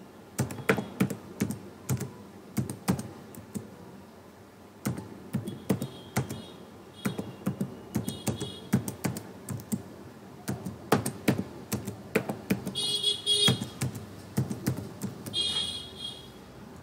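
Computer keyboard typing: bursts of keystroke clicks with a short lull about four seconds in. A few brief high-pitched chirps sound in the background.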